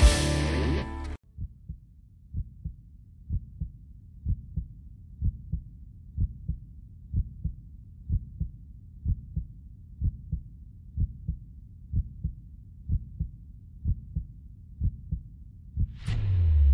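Music cuts off about a second in, giving way to a heartbeat sound effect: low double thumps, about one pair a second, the tension beat before a blind audition begins.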